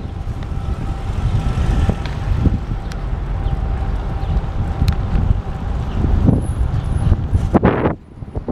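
Wind buffeting the microphone of a camera on a moving bicycle: a loud, steady low rumble, with a faint steady hum above it.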